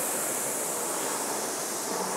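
Air-resistance flywheel of a Concept2 indoor rower spinning with a steady whoosh, easing slightly over the recovery between strokes.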